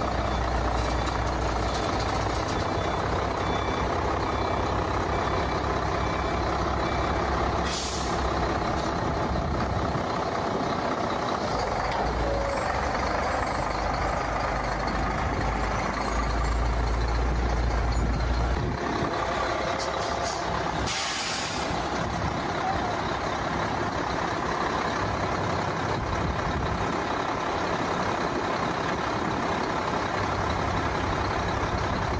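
Volvo FL10 tipper truck's straight-six diesel engine running with a steady low rumble that swells a few times. Two short hisses of released air come from the truck's air system, about eight seconds in and again about twenty-one seconds in. Faint repeated beeping is heard over the first several seconds.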